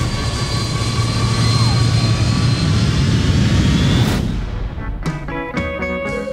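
Loud roar of a jet airliner's engines and rushing air as the plane is rolled during an uncontrolled dive, with a thin high whine over it; it cuts off abruptly about four seconds in. Music begins near the end.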